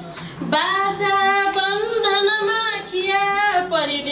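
A woman singing a Nepali poem as a song, holding long, slightly wavering notes, with a short breath about half a second in.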